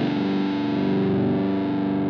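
Distorted electric guitar music holding steady sustained notes.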